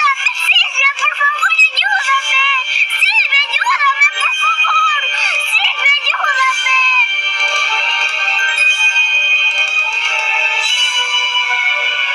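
A high-pitched, thin, electronically altered voice, with music. For the first half its pitch swoops up and down; from a little past the middle it holds long, steady high notes.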